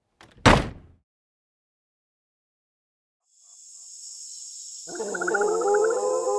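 A single heavy thud, then about two seconds of silence. A hiss then swells in, and electronic synth music begins about five seconds in.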